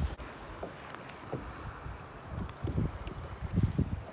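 Wind rumbling on the microphone, with a sharp click near the start and a few soft knocks as a telescoping aluminum phone-mount pole is handled and extended in a kayak's scupper hole.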